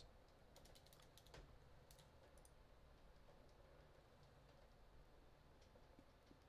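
Faint computer keyboard typing: a quick run of keystrokes in the first two and a half seconds, then only a few scattered clicks.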